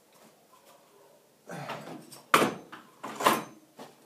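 Metal weed eater parts being handled on a workbench: a scrape, then two loud knocks about a second apart as pieces are set down.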